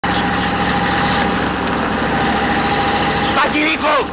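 An old bus engine idling steadily. About three and a half seconds in it cuts off, and a man's voice calls out.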